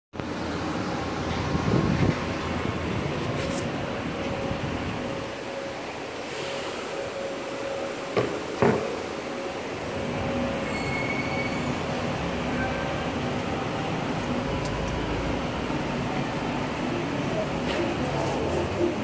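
Steady background noise of a metro station, with a faint held hum and two sharp knocks about eight seconds in.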